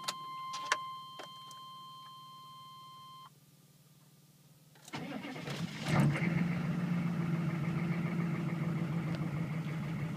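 A steady electronic warning tone sounds for about three seconds, with a few clicks, then stops. After a short quiet gap, the GM 6.5-litre diesel V8 cranks for about a second on a cold start, catches, and settles into a steady idle, heard from inside the cab.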